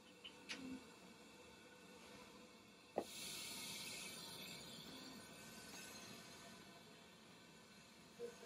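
Faint steady hiss of air and oxygen flowing from a MaxVenturi flow generator into a CPAP helmet. A sharp click comes about three seconds in, after which the hiss is louder and brighter, then slowly fades.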